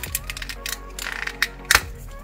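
Plastic clicks and snaps from a 2004 Mutatin' Leo transforming turtle figure as its shell and limbs are twisted and unfolded by hand. A scatter of small clicks leads up to one sharper snap near the end.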